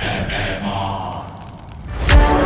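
A long breathy exhale, like a sigh, fading out about a second and a half in.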